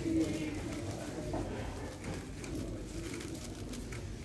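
A plastic 7x7 speed cube being turned quickly, a steady patter of light clicks, while a pigeon coos, loudest near the start.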